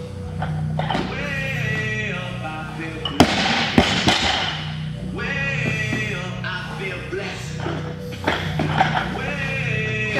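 Background music plays throughout. About three seconds in, a loaded barbell with bumper plates is dropped onto the rubber gym floor and hits with a sharp thud and a second bounce; smaller knocks come near the end.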